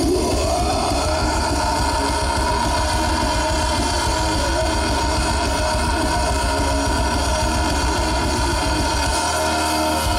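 Hard rock band playing live and loud through a festival PA: electric guitars, bass guitar and drums.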